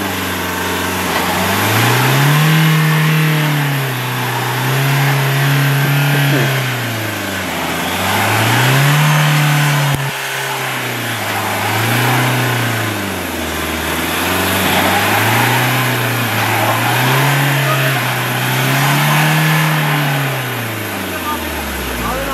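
SUV engine revving up and down over and over, about every two seconds, as the driver tries to power the vehicle out of deep mud where it is stuck. The revs drop away near the end.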